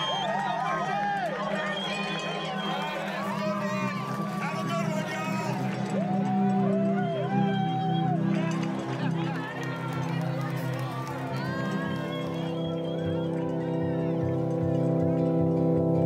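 Crowd of runners and spectators cheering, whooping and shouting as an ultramarathon gets under way, over a low sustained music bed; the music swells over the last few seconds.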